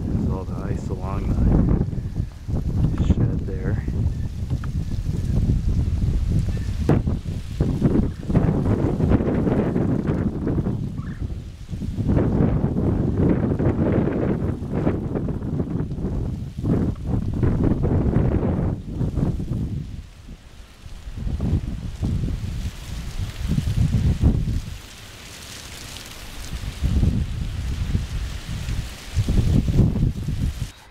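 Wind buffeting the microphone: a loud, gusting low rumble that rises and falls, easing briefly about two-thirds through and again for a short lull near the end.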